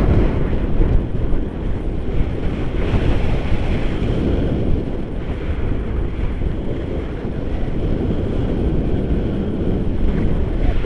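Wind from the paraglider's airspeed buffeting the camera microphone: a loud, steady rushing rumble, heaviest in the low end.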